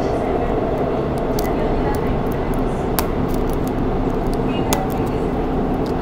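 Subway train running, heard inside the carriage as a steady rumble with a faint hum, with a few sharp clicks from plastic-wrapped lollipop capsules being handled.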